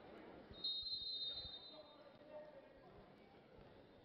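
Faint sports-hall crowd murmur with a referee's whistle blown about half a second in, held for about a second and a half, signalling the server to serve. A few faint thuds of a ball are also heard.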